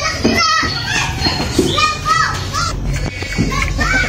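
Children's high voices chattering and calling, in many short rising and falling calls.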